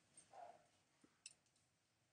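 Near silence with a few faint, short clicks, the clearest a little past the first second, and a brief soft sound about half a second in.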